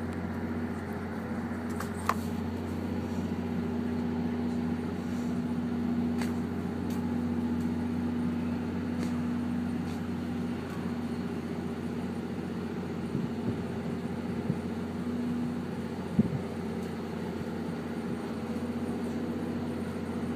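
Steady idling hum of a standing NJ Transit commuter train of Comet coaches powered by a GP40PH-2B diesel locomotive. Two brief sharp knocks come through, one about two seconds in and one near sixteen seconds.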